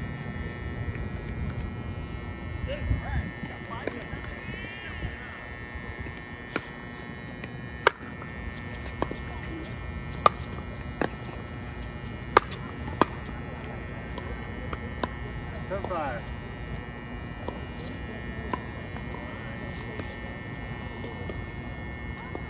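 Pickleball rally: a hollow plastic ball struck back and forth by paddles, giving sharp pops at irregular intervals, loudest in a quick exchange of volleys around the middle. A steady high-pitched hum runs underneath.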